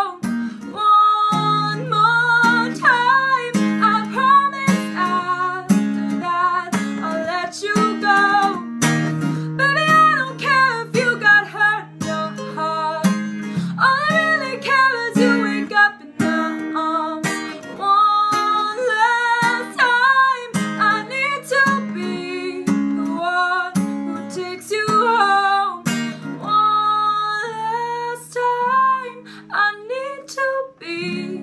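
A woman singing a pop ballad while strumming an acoustic guitar, the strums ticking steadily under a sustained, gliding vocal line.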